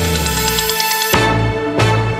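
Closing theme music with sustained tones, and a sharp accented hit about a second in.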